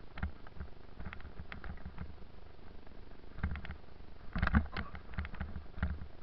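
Irregular knocks and rattles of a bicycle jolting over a bumpy woodland dirt track, picked up by a helmet-mounted camera over a low rumble, with the loudest cluster of knocks about four and a half seconds in.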